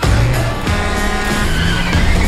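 Sports car engine revving with tyres squealing. It starts suddenly at full loudness.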